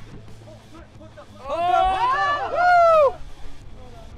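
Several people whooping and shouting excitedly at once, their voices overlapping for about a second and a half starting midway through, over a faint low steady hum.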